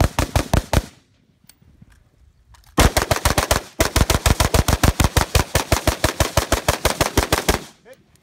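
Rapid rifle fire from an AR-style carbine, shots at roughly eight a second. A short string ends about a second in, then after a pause a long unbroken string runs from about three seconds in until just before the end.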